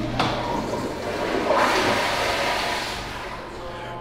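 A public restroom toilet flushing with a strong rush of water that builds about a second and a half in, then eases off; the flush pressure is pretty good.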